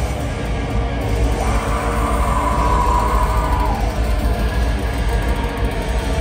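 Live metal band playing at full volume: distorted guitars, bass and drums in a dense, boomy mix heard from the crowd. A single held note stands out of the mix from about a second and a half in and slides down just before the four-second mark.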